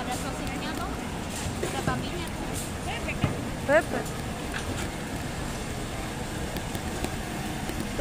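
Steady street traffic noise with brief voices. The loudest voice is a short call rising in pitch, just under four seconds in.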